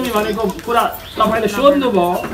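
Speech: a man reading a religious story aloud in Nepali, in a steady, chant-like reciting tone with phrases held on one pitch.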